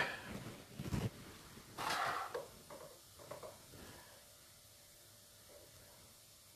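A few faint, soft handling and movement noises, about a second and two seconds in, then near silence: room tone.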